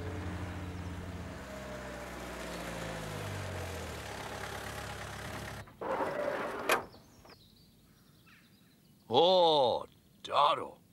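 Minibus engine running, its note sinking as the bus slows, then cutting out about five and a half seconds in. A brief clatter ending in a sharp click follows, and a short vocal exclamation comes near the end.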